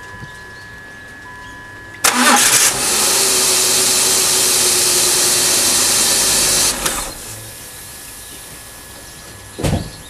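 A BMW E39's engine starting about two seconds in and running loudly for about four seconds before the sound falls back to a faint background hum. A short loud knock comes near the end.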